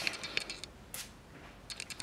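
Light plastic clicks of a small setting-spray bottle and its cap being handled, with one short hissing puff about a second in, a single pump of fine mist.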